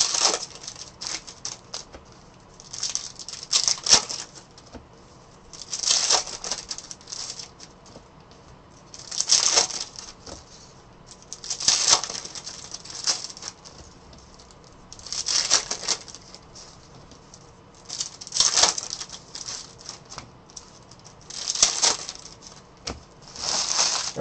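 Foil trading-card pack wrappers crinkling and tearing open by hand, in short bursts about every three seconds.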